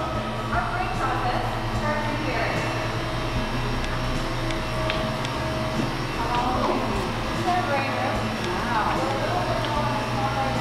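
Indistinct voices talking over a steady low mechanical hum.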